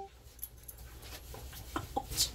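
Faint sounds of a dog moving about, with two short, soft whimpers near the end.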